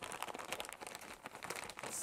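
Clear plastic reclosable (zip-top) bag crinkling faintly in a continual patter of small crackles as hands handle it and press its closure shut.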